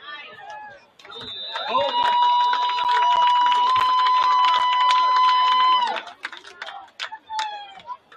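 A loud, steady tone held for about four seconds, starting with a short rise about a second and a half in and cutting off near the six-second mark, over crowd chatter.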